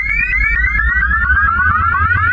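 Experimental electronic music played in reverse: a synthesizer repeating short rising chirps, about four or five a second, over a deep bass drone and a fast, even ticking pulse.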